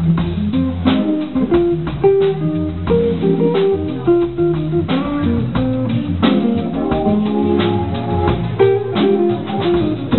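Live jazz from a trio of electric guitar, keyboard and drum kit. The guitar stands out, playing a moving line of single notes over the keyboard and the drum and cymbal rhythm.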